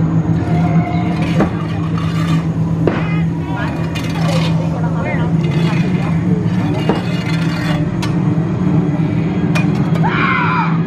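A steady low hum with people's voices over it, broken by a few short high-pitched cries.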